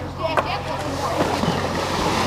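A tow boat's engine running steadily, under wind and water noise, with a few brief voice fragments.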